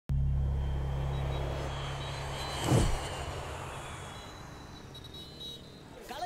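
Low steady rumble that starts abruptly and slowly fades, with a loud whoosh peaking a little under three seconds in.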